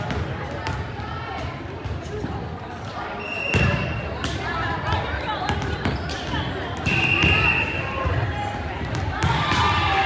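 Busy gymnasium din of many voices, with volleyballs thudding and bouncing on the hardwood floor. Two short steady whistle blasts, typical of a referee's whistle, come about three and a half and seven seconds in, and voices grow louder near the end.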